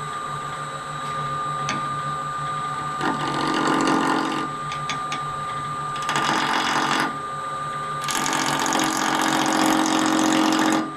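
Wood lathe running with a steady motor hum and whine. A turning tool cuts into a spinning square wood block in three bursts: about three seconds in, about six seconds in, and from about eight seconds on. These are the first roughing cuts on a square blank.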